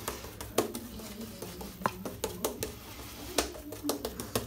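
Turn N Shave shaving brush working a lather of shaving soap on the face: a run of irregular soft clicks and squishes from the bristles, over a low steady background hum.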